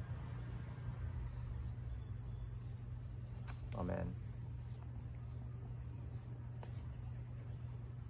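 Steady, unbroken high-pitched chorus of insects such as crickets, with a low hum underneath. A brief low pitched sound, like a short murmur, comes midway.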